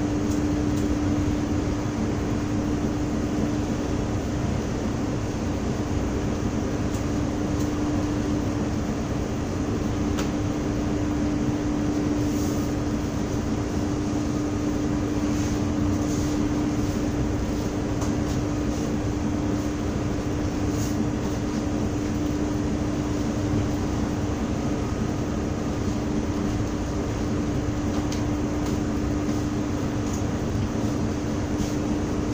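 Steady drone of a small tanker's engine under way, a low hum holding one pitch, mixed with the hiss of wind and sea.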